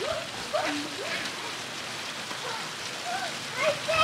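A steady hiss with faint children's voices calling out now and then, briefly louder near the end.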